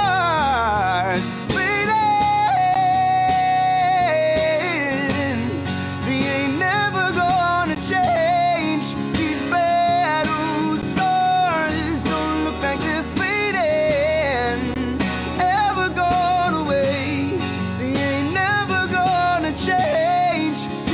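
A male singer singing a soulful ballad over a strummed acoustic guitar, with long held notes and pitch bends between phrases.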